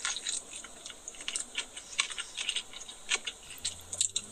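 A person biting into and chewing a mouthful of burger: a run of short, irregular mouth clicks and smacks.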